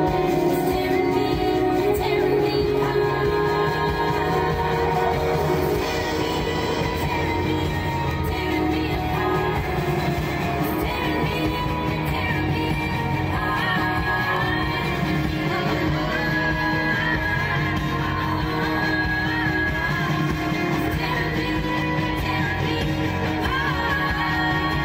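A pop song with a sung vocal playing on a radio.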